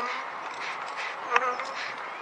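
Honeybees buzzing steadily around an open top bar hive, with one short sharp click about one and a half seconds in.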